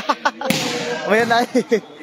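A volleyball struck hard by hand: one sharp slap about half a second in, with a brief smear of echo after it.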